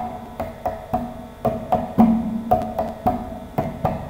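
Instrumental interlude of a bhajan: a steady percussion rhythm of sharp drum strokes, about three a second, with a deeper drum note swelling at about the halfway point.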